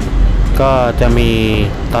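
A man speaking Thai over a low, steady rumble.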